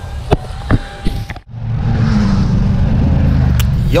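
A few sharp clicks, then after a sudden cut about a second and a half in, the loud, steady low rumble of a small motor vehicle running, heard from its open back where the mountain bikes are loaded.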